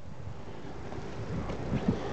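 Low rumble of wind on a handheld microphone outdoors, with a few soft bumps near the end.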